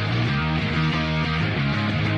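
Punk rock band track with distorted electric guitar and bass guitar playing an instrumental passage, no vocals, with the drums taken out for play-along.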